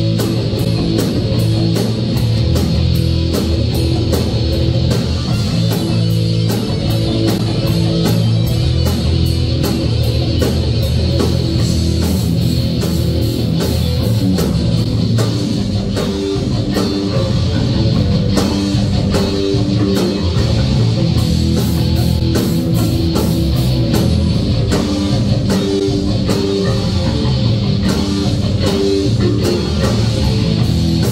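Heavy metal band playing live and loud: distorted electric guitars over a fast, steady drum beat.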